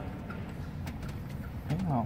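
Faint clicks over low workshop background noise as a gloved hand rocks a Mitsubishi Pajero Sport's turbocharger to show play in its shaft, the sign of a broken center section. Near the end, a short voiced sound rising and falling in pitch.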